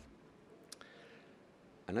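A pause in a man's talk in a small room: quiet room tone with a low thump at the very start and a single sharp click just under a second in. His voice starts again near the end.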